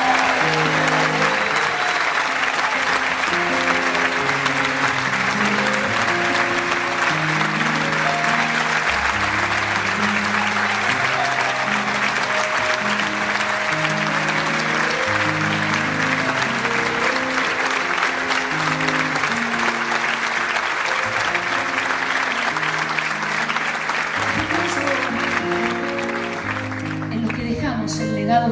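Live audience applauding steadily over slow instrumental music that holds long, sustained notes and chords in a low register. The applause thins out near the end.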